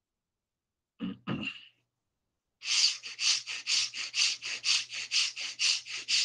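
A quick double cough about a second in. Then rapid, rhythmic forced breathing through the nose, about four short sharp breaths a second, the quick-and-short breath of a yogic breathing exercise (bhastrika-style).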